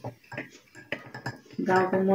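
A spoon clinking against the inside of a mug in several short, light taps as it stirs a drink.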